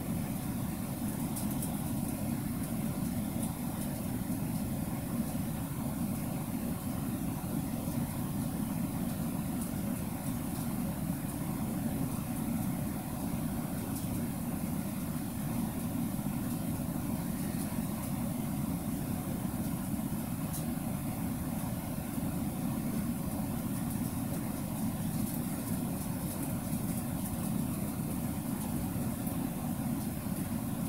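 Steady, unbroken low rumble of background noise with a faint high hiss over it, and no distinct events.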